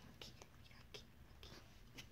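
Near silence: room tone with a few faint, short ticks spread across the two seconds.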